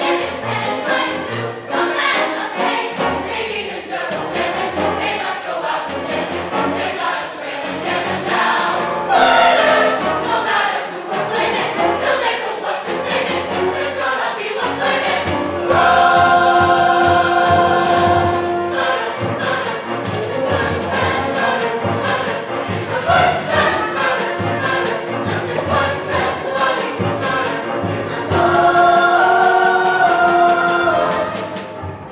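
A musical-theatre chorus singing together with orchestral accompaniment, with long held chords about halfway through and again near the end.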